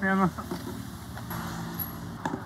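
A short spoken exclamation, then a motor vehicle's engine running steadily at an unchanging pitch.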